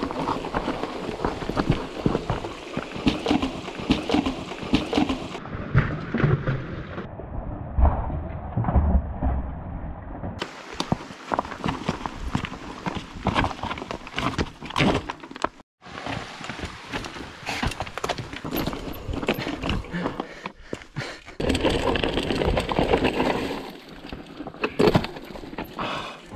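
Mountain bike rattling and clattering over a rocky, loose-stone trail: a dense run of irregular clicks and knocks from tyres on stones, chain and frame. The sound changes abruptly a few times.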